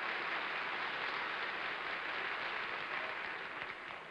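Studio audience applauding, dying away near the end.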